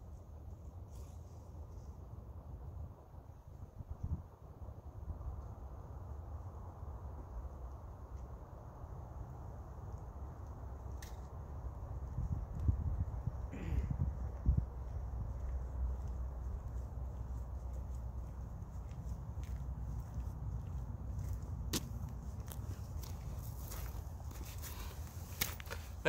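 Footsteps on a paved trail coming toward the microphone over a steady low rumble. A few sharp clicks and rustles come near the end.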